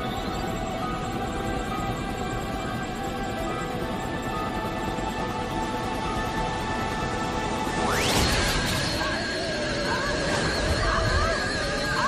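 Film soundtrack: a tense score of sustained tones. About eight seconds in, a sudden rising electronic sweep and crash sets off the laboratory machinery's effects, followed by slowly climbing tones and warbling sounds as it powers up.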